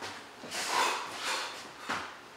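Two people moving through a boxing footwork drill on a rubber gym mat: about three short breathy bursts of sharp exhalations and shoe scuffs, the last one the sharpest, near the end.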